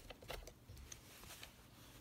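Near silence, with a few faint light clicks and handling noises near the start as a wooden embroidery hoop and its fabric are turned over.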